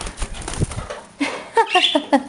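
Cockatiel flapping its wings as it is caught and held in a hand, with rustling and bumping on the microphone in the first second, followed by a voice.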